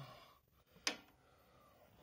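Mostly quiet, with a single sharp click a little under a second in.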